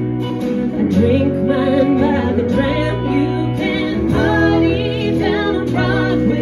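Live country song: a woman singing over strummed acoustic guitar, with electric guitar accompaniment.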